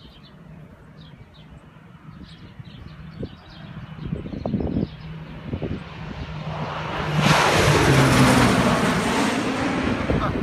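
Crop-duster airplane engine approaching and passing low, growing louder to a peak with a rush of noise about seven seconds in, its pitch dropping as it goes by.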